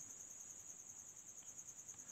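Near silence, with a faint, steady, high-pitched pulsing trill of a cricket.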